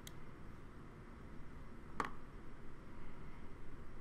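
Low room noise with a faint high tick at the start and a single sharper click about two seconds in.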